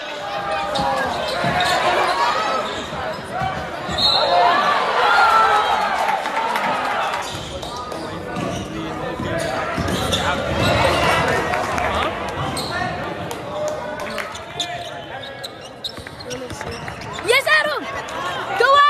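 Basketball game sound in a gym: a crowd shouting and cheering in swells, with a basketball bouncing on the hardwood floor. A few sharp squeaks near the end, rising and falling in pitch.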